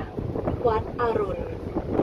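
Wind buffeting the microphone on the open deck of a river boat, a steady low noise; a voice speaks briefly near the middle.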